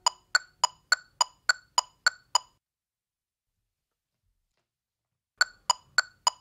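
Electronic metronome clicking steadily, about three and a half clicks a second, then stopping about two and a half seconds in. After a stretch of silence the clicks start again near the end as the count-in for the next scale.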